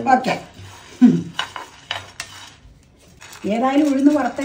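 Wooden spatula stirring and scraping dry grains around a non-stick frying pan as they dry-roast, with several sharp scrapes and clicks in the first two seconds. A woman's voice comes in near the end.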